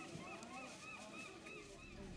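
A bird calling: a quick, fairly faint series of about six short repeated notes.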